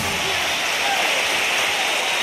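Large audience applauding steadily, dense clapping with a few voices calling out, just after the song has ended.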